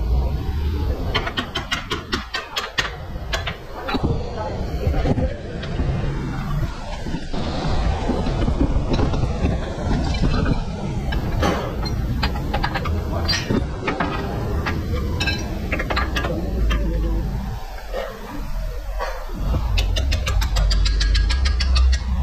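Workshop sounds of hand tools on metal suspension parts under a car: runs of rapid, evenly spaced metallic clicks, with indistinct voices talking in the background.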